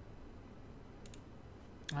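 Two faint clicks close together about a second in, from computer controls stepping through moves on an on-screen go board, over a low steady hum.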